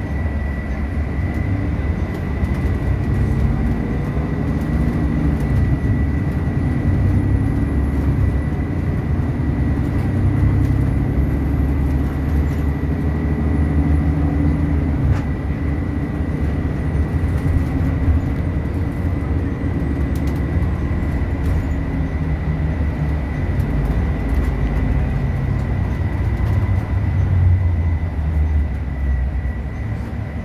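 Road and engine noise heard from inside a moving car: a steady low rumble that rises and falls a little, with a thin steady high whine over it.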